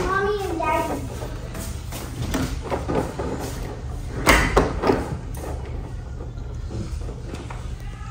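Glass balcony door being shut and its lever handle worked, giving scattered clicks and knocks with one sharp knock about four seconds in. The door is loose and will not lock properly.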